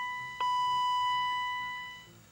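Electronic warning chime from a BMW E36 M3, with the ignition on and the engine not running: a steady high tone, struck again about half a second in, then fading away.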